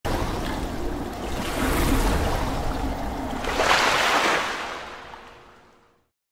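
Splashing water sound effect: a dense watery surge that swells twice, around two seconds in and again at about three and a half seconds, then fades out.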